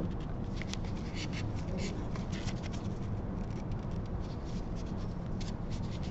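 Filter paper being folded and creased by nitrile-gloved hands: soft crackling and rustling in many small irregular ticks, over a low steady room hum.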